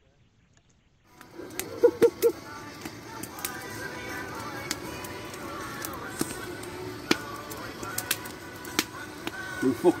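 After about a second of near silence, music and voices start up, over a wood campfire crackling with scattered sharp pops.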